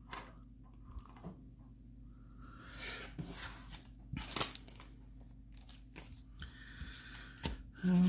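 Quiet handling sounds: soft rustles of paper and plastic packaging and a few light clicks, with quiet stretches between.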